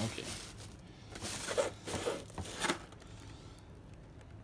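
Thin plastic shopping bag rustling and crinkling in four or five short bursts as a boxed die-cast car is pulled out of it.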